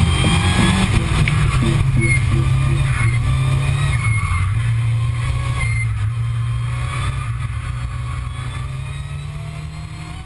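Mitsubishi Lancer Evolution X rally car's turbocharged four-cylinder engine running at speed, with pitch rising through the revs; the sound fades out gradually over the last few seconds.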